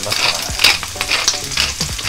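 Wooden pepper mill grinding black peppercorns, a gritty crunching that comes in short repeated bursts with each twist of the head.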